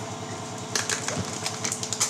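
Light clicks and clatter of a group eating from plates with spoons, several quick sharp taps in the second half, over a steady low hum.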